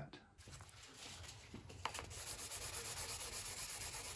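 Wet sanding by hand with 1200-grit sandpaper on a block, rubbed in quick, even back-and-forth strokes over the glossy clear-coated red paint of a model boat hull to cut back orange peel. The strokes are faint and become steadier and a little louder halfway through, with a single light click just before.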